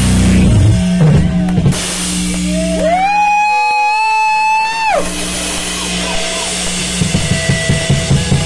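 Live rock band playing: bass and drums to begin with, then a long held high note that slides up into pitch and drops away after about two seconds. Near the end the drums take up quick, even beats, about three a second.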